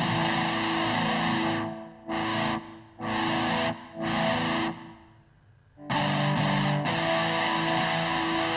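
Roland GR-33 guitar synthesizer patch played from a guitar: a distorted, guitar-like tone sounding sustained chords. They start suddenly, break off briefly several times, and return after a longer gap a little past the middle.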